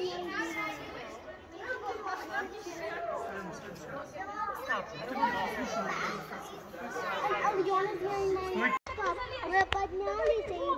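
Voices of a group of children and adults talking and calling out over one another, unclear chatter with no words standing out.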